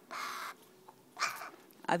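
A pet crow giving two short, harsh caws about a second apart.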